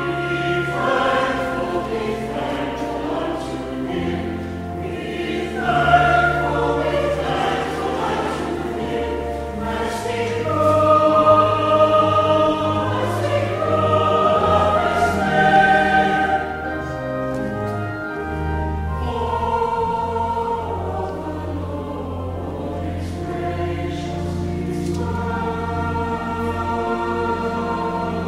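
Church choir singing in harmony with organ accompaniment, long held low notes sounding beneath the voices. It swells louder about halfway through, then eases back.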